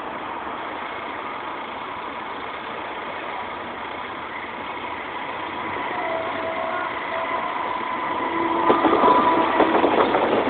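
Passenger train approaching a level crossing, growing louder from about six seconds in, its wheels clacking over the rails in the last second or so as it passes close by.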